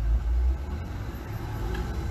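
A low rumble of background noise, strongest for about the first half second and then weaker, in a pause between a man's sentences.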